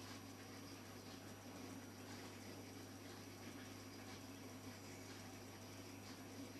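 Near silence: a faint steady low hum with hiss.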